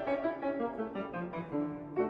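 Instrumental music led by piano, a run of quickly struck notes.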